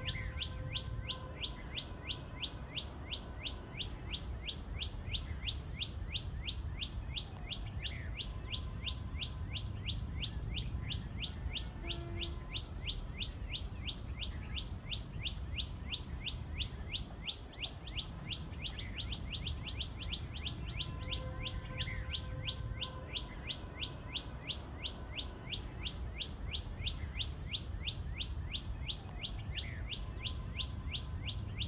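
Common tailorbird singing: a rapid, steady series of sharp repeated notes, about four a second, kept up without a break.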